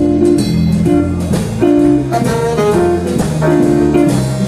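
Live jazz-blues group playing a mid-tempo tune: tenor saxophone and electric guitar over bass and drums, with a short melodic figure repeating about once a second.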